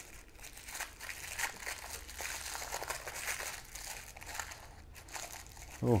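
Thin plastic wrapping crinkling and crackling as it is unwrapped by hand from a small ring, a continuous run of small crackles.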